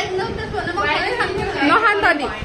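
Several women's voices chattering and talking over one another.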